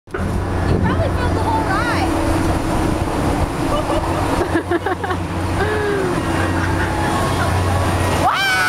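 Spinning fairground ride in motion: a steady low machine hum under a rushing noise, with voices calling out now and then.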